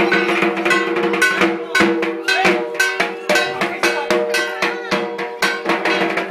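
Drums and a clanging metal percussion instrument played together in a fast, steady rhythm, several strokes a second, the metal ringing on between strokes.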